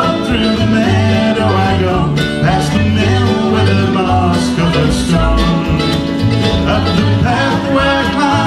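Live acoustic folk-country band playing an instrumental break between verses: mandolin, strummed acoustic guitar and accordion over a plucked upright bass, in a steady rhythm with no singing.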